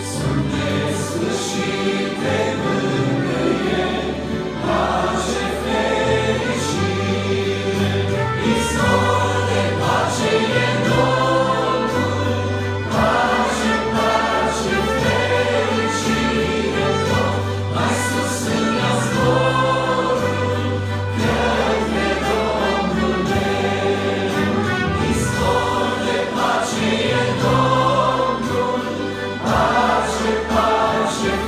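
A mixed vocal group singing a Romanian hymn in harmony, with accordion and trumpet accompaniment, over a bass line that steps to a new low note about once a second.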